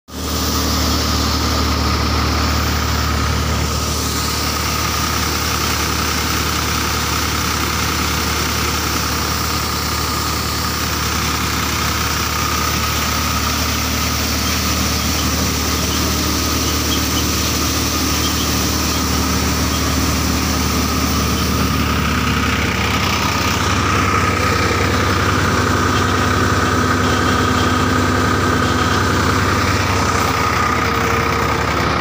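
Tractor-driven thresher running steadily: a continuous low tractor-engine hum with a steady high whine from the machine. The engine note rises a little about two-thirds of the way through.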